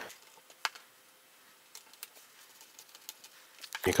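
Faint, scattered small clicks and ticks of a tiny Phillips screwdriver turning a screw into a MacBook Pro's memory cover.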